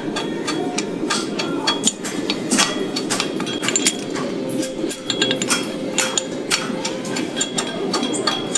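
Steel hammer striking a red-hot steel horseshoe on an anvil in quick, irregular blows, several a second, with the anvil ringing, as the shoe is shaped and finished. A steady low rumble runs underneath.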